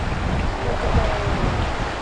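Wind buffeting the microphone with a gusty low rumble, over a steady rush of water from the hot-spring pools.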